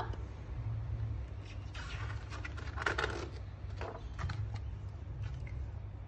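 Paper rustling as a picture-book page is turned, in two short bursts about two and three seconds in, followed by a few light taps, over a low steady hum.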